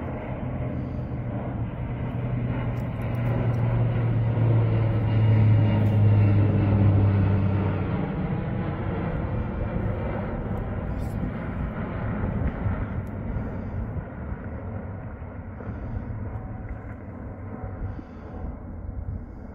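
Engines of a firefighting airplane flying over, a steady drone that swells to its loudest about six seconds in and then fades as the plane moves away.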